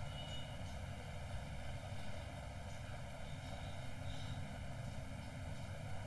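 Steady background noise, a low rumble with faint hiss, unchanging throughout.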